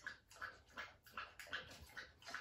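Dog lapping liquid from a glass held to her mouth: faint, quick slurps about three a second.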